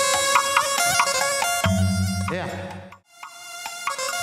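Karo keyboard (kibot) music: a melody over a held drone note, with bass notes entering in the middle. It fades out to silence about three seconds in, then comes back up.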